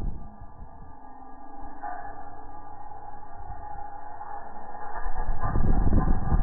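Bass music playing through a car's wall of four Sundown Audio ZV4 15-inch subwoofers, at a quiet break in the track: the heavy bass drops away, leaving soft sustained tones, and comes back loud about five seconds in.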